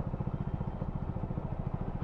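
Motorcycle engine idling with a steady, even low throb while the bike stands still.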